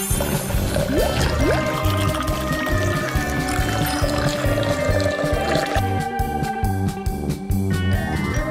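Upbeat background music with a steady beat, over which soy sauce is poured into a drinking glass.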